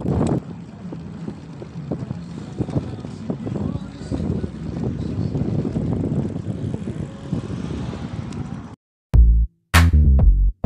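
Brompton folding bike rolling over a bumpy brick-paver path, rattling with a rapid run of clicks and a squeaky noise from the bike, which the rider thinks comes from sand getting in. The sound cuts off near the end and a loud drum-machine music beat starts.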